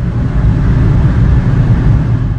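Slow, dense motorway traffic inside a road tunnel: a loud, steady low rumble of engines and tyres that swells over the first half second.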